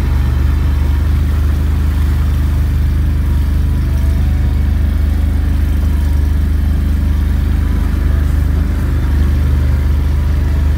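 ATV engine running steadily at low speed: a low, even drone that changes little.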